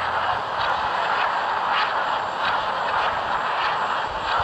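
Steady rushing mechanical noise with faint pulses repeating about every half second, a railway or machinery sound effect.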